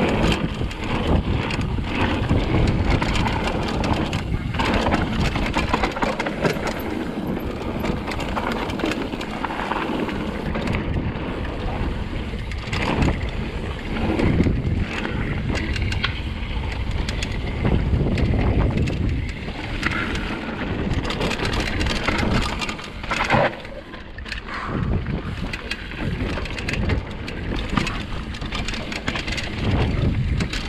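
Mountain bike riding fast down a dirt and gravel trail: tyres rolling and crunching over the ground, the bike rattling over bumps, and wind on the microphone.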